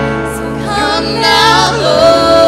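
Live worship band music, with women singing a sustained, wavering melody over keyboard and electric guitar chords.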